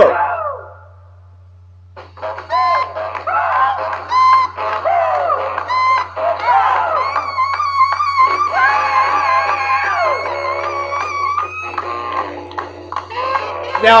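A 1952 rhythm-and-blues record led by honking saxophone, played back through speakers and picked up by a webcam microphone in a small room. The music is absent for about a second near the start, leaving a steady low hum that continues under the music.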